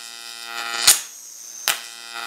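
High-voltage arc from a salvaged CRT flyback transformer driven by a four-lamp fluorescent light ballast, buzzing steadily with a sharp snap about a second in and another near the end. It is the hot orange arc of the ballast's lower-voltage running mode, without the screaming blue ignition arc.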